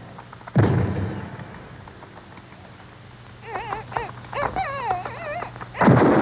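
Monster-film sound effects: a heavy crashing stomp about half a second in, then the crushed monster's high, wavering squealing cries, and another heavy crash near the end.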